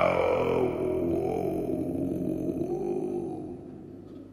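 Didgeridoo drone with a wavering, voice-like tone gliding above it, fading out near the end.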